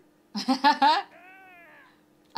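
A woman laughs briefly. A softer, drawn-out high call follows, rising and then falling in pitch.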